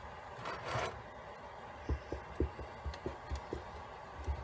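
Soft, irregular low thumps of hands kneading and pressing a sticky silicone-and-cornstarch putty, like working bread dough, with a short hiss just under a second in.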